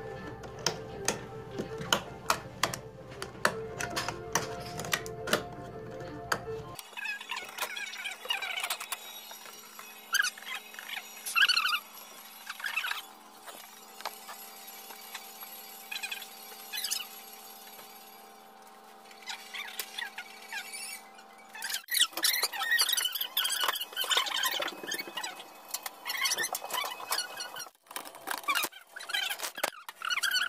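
Switches on a night control switch panel clicking one after another, about twice a second, for the first six or seven seconds. Steady background music runs under them and carries on afterwards with scattered small sounds.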